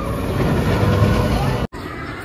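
Steel roller coaster train running along its track, a loud low rumble that swells about a second in, with voices in the background. It breaks off sharply near the end into quieter outdoor ambience.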